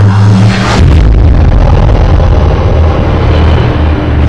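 Loud TV news closing theme music with heavy sustained bass. It cuts in suddenly, with a whooshing sweep about a second in.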